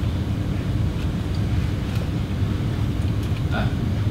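Steady low rumble and hum of room noise in a lecture room, with faint voices starting near the end.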